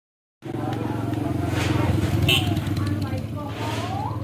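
A motor vehicle engine running with a steady low throb, starting just under half a second in, with voices talking over it.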